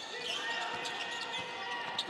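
A basketball being dribbled on a hardwood court during live play, with arena ambience and voices in the hall behind it.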